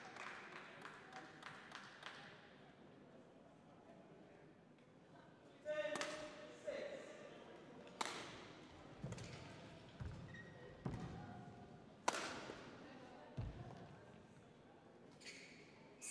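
Badminton rally in an indoor hall: sharp racket strikes on the shuttlecock about two seconds apart, starting some six seconds in, with dull thuds of footwork on the court between them.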